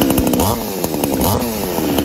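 BILTUFF 52cc two-stroke chainsaw running, revving up and down so that its pitch falls and rises several times.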